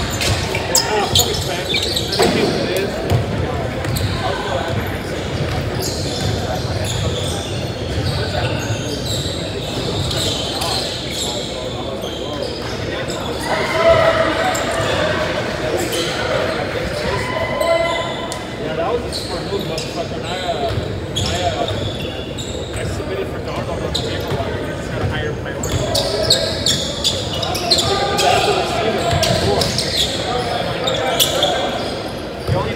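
Basketballs bouncing on a hardwood gym floor during a game, with players' voices and shouts echoing in the large hall.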